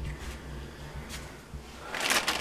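Faint handling of crossbow parts on a carpeted workbench, with a couple of light clicks: one at the start and another about a second in.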